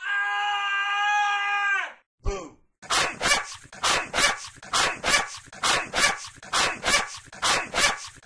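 A cartoon scream held on one steady pitch for about two seconds. After a brief gap come short, sharp, bark-like cartoon cries, about two a second, until the end.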